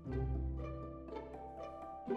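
Quiet instrumental background music: a string melody of separate notes, each starting cleanly and fading, over a held low bass note.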